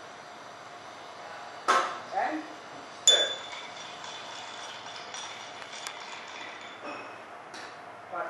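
Bar glassware clinks sharply, and the loudest strike, about three seconds in, rings on as a clear ping that fades over several seconds. Lighter clinks and taps come before and after it.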